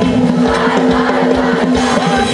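A live band and a large amateur choir performing a lively folk song together, with sustained sung notes over a steady drum beat.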